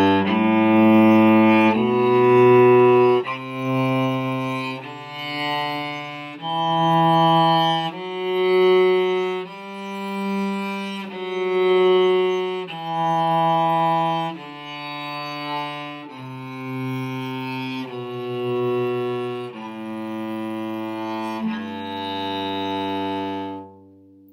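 Cello bowed slowly through a one-octave G major scale, one even note per bow of about a second and a half each. It climbs from the open G string to the G an octave up, reached about ten seconds in, then steps back down without repeating the top note and ends on the low G just before the end.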